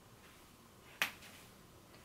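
A single sharp snap made with the hands about a second in, against an otherwise quiet room.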